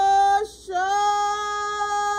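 A woman singing long, steadily held notes in a slow worship song: one note breaks off about half a second in, and a new note begins a moment later and is held.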